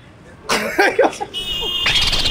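A man coughing and laughing in an irregular outburst that starts about half a second in. A high steady tone enters near the end.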